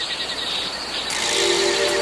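Steady high-pitched insect chirring of a forest ambience. About a second in, a held low musical chord comes in underneath it.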